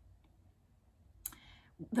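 Near silence, then a short mouth click and breath about a second and a quarter in, just before a woman's voice resumes at the very end.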